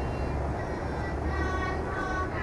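Steady low rumble of city traffic, with a voice from traditional Thai shrine music singing a held phrase from about a second and a half in.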